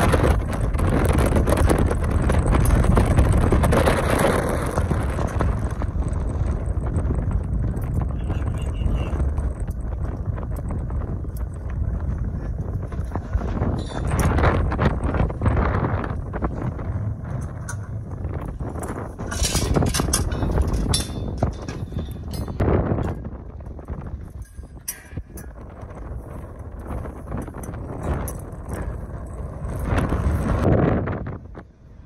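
Strong wind buffeting the microphone in gusts, a heavy rumbling noise that is loudest for the first few seconds and swells again twice later, with scattered clicks and knocks.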